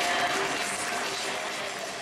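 Audience applause, slowly fading away.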